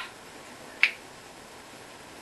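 Two sharp hand sounds from a hand routine between two people: a softer clap-like slap right at the start, then a louder finger snap a little under a second in.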